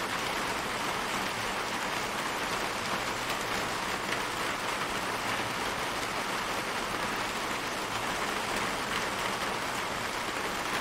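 Rain shower falling steadily on a garden patio: an even, dense hiss of raindrops hitting wet brick paving and plants, with no let-up.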